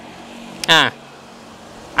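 A car engine running faintly and steadily in the background, with a man's short spoken 'ah' in the first second.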